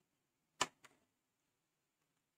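Two short sharp clicks about a quarter second apart, the first louder, otherwise near silence.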